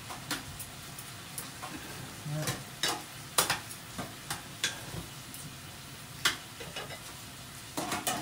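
Squid and other food sizzling on a tabletop grill, with metal tongs clicking and scraping against the grill plate at irregular intervals as the pieces are turned.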